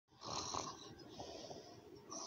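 A child's faint, breathy pretend snoring for a sleeping doll, strongest in the first half-second and softer after.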